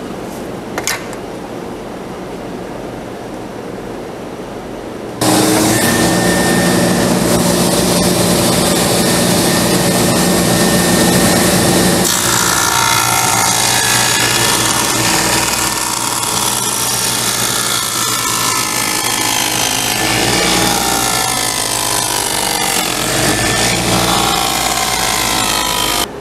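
Table saw cutting dados across an oak plank: a steady machine sound that turns abruptly much louder about five seconds in as the blade works through the wood, then changes character around twelve seconds in.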